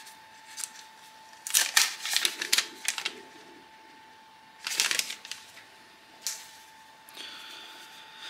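Clear plastic protective film being peeled off a hard plastic charging case, crinkling and crackling in a few short bursts: a longer run in the first half and a shorter one about five seconds in.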